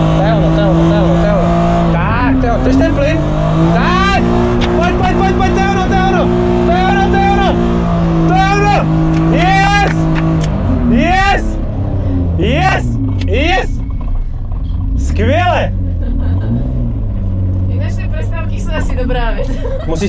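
BMW E36 engine held at high, steady revs through a drift, dipping briefly about two seconds in, then revs dropping and wavering from about halfway as the car comes off the slide. Over the engine come repeated high, excited whooping cries from inside the car.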